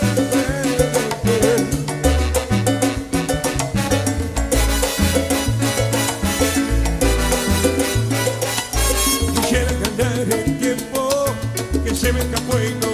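Recorded salsa romántica: a full salsa band with a syncopated bass line stepping between held low notes under steady percussion.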